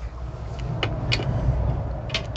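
Low rumble with two or three light clicks and knocks about a second in, from golf clubs being handled at a workbench.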